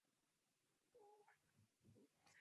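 Near silence in a pause between speakers on a video call, with a very faint short tone that bends in pitch about a second in.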